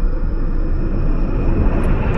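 Steady low rumble with a faint thin high whine above it, like a jet passing: the build-up of a logo-intro sound effect. A couple of short high ticks come near the end.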